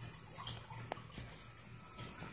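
Faint steady trickle of water from aquarium filters, with one small click about a second in.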